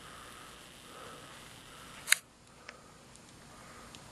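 A single sharp click about halfway through, followed by a few faint ticks, over a quiet outdoor background.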